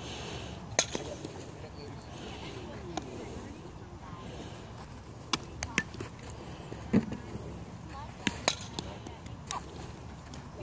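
Several sharp, scattered clicks and knocks of softball infield practice, the loudest about a second in and about seven seconds in, over steady outdoor background noise and faint distant voices.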